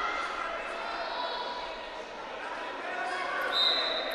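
Indistinct shouting and voices from coaches and spectators in a large sports hall during a standing wrestling exchange, with a high, steady whistle blast starting near the end.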